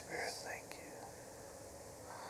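Whispered speech of a quiet prayer, lasting about half a second, then soft room tone with a faint click.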